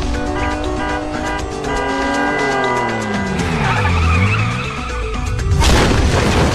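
Tyres skidding in a long wavering squeal, then a loud crash about five and a half seconds in as a motorcycle goes down on the road, with background music throughout.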